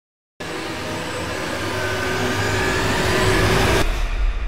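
End-screen sound effect: a loud, noisy rush that starts suddenly, builds steadily for about three seconds and cuts off just before the end, leaving a low rumble.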